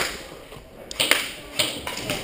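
Semi-automatic airsoft gunfire: three sharp snaps, one at the start and two more about a second in, about half a second apart.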